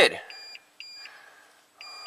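A 2020 Toyota Tundra's dashboard warning beeper sounds short electronic beeps in pairs, the pairs repeating about every second and a half. It is the parking-aid (clearance sonar) fault warning, set off with the right front sensor unplugged.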